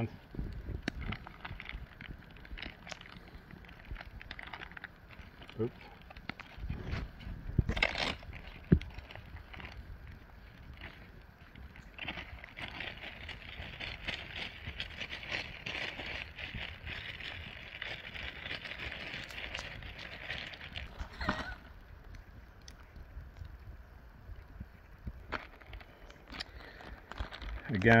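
Clear plastic zip-top bag rustling and crinkling as raw rack of lamb is worked around inside it, with many small clicks and crackles. There is a sharper crinkle about eight seconds in and a longer stretch of rustling through the middle.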